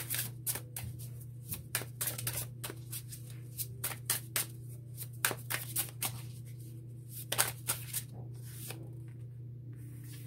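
A tarot deck being shuffled by hand: a busy, irregular run of crisp card snaps and flicks that thins out near the end, over a steady low hum.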